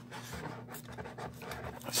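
Cardboard and plastic of a trading-card blister pack scraping and rustling as hands pull it open, in quiet, irregular scratches.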